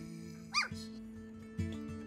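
A three-week-old golden retriever puppy gives one short, high yip about half a second in, its pitch rising and falling. A song with guitar plays underneath.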